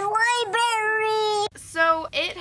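A woman's high voice singing long held notes, cut off abruptly about one and a half seconds in, with a brief vocal sound near the end.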